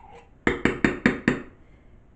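A spoon knocking five times in quick succession against a tin can, working out the thick sweetened condensed milk stuck inside.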